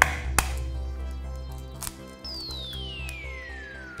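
Background music with a few sharp cracks and taps of an eggshell being broken open by hand over a plastic tub, then a high whistle that falls steadily in pitch through the last two seconds.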